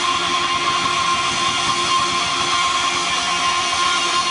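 Live rock band playing loud, electric guitar out front, a dense and steady wall of sound without a break.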